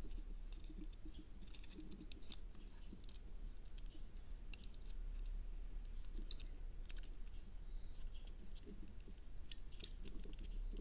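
Light, irregular clicks and scratches of small plastic parts being handled, as a plastic canopy is pressed and shifted over a tiny drone frame and its antenna wires are worked through it.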